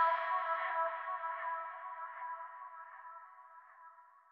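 The closing held electronic chord of a trap-pop song, with no beat or vocals, fading slowly down to near silence.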